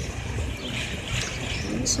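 Steady rumbling hiss of outdoor background noise, with a brief spoken word near the end.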